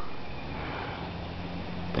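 Steady fizzing of gas bubbles rising from an HHO electrolysis cell's stacked steel plates in a bucket of electrolyte, with a faint low hum underneath.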